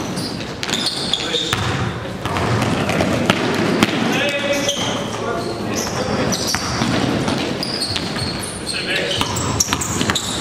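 Basketball dribbled on a gym floor, with repeated sharp bounces, during a game in a large echoing gym. Short high squeaks from sneakers are scattered through, along with players' voices and shouts.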